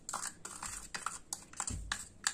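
Granulated sugar being scraped out of a plastic cup with a plastic spoon into a stainless steel pan: a run of light, irregular clicks and scrapes, with a soft low bump near the end.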